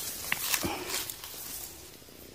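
Grass rustling and a few short knocks and clicks as a rough stone is picked up from the ground, fading toward the end.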